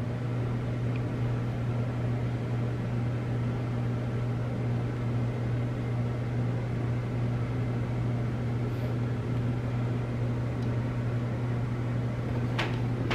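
A steady low hum with a hiss over it, even throughout, like a fan or appliance running.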